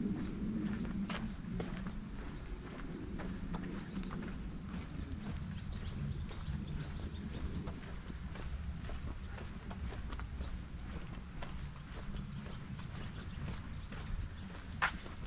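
Footsteps on a brick-paved walkway: an uneven run of light clicks over a steady low rumble.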